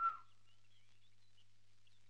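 A short whistle-like bird call right at the start, followed by faint, scattered bird chirps over a low steady hum.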